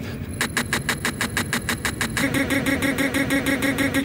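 A machine running with a fast, even clatter of about eight clicks a second. About two seconds in, a steady hum joins it.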